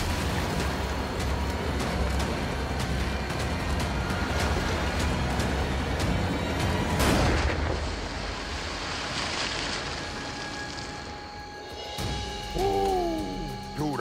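A large alligator on a line thrashing at the surface and churning the water, with heavy splashing and one sharp, loud splash about seven seconds in. The thrashing then dies away.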